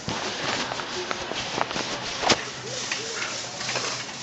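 Supermarket background noise: a steady hiss of the shop floor with faint, distant voices and a few short clicks, one sharp click a little past halfway.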